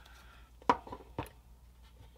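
Two small, sharp clicks about half a second apart: hands handling small styrene parts and tools on a workbench while a glued piece is set back onto model railroad track.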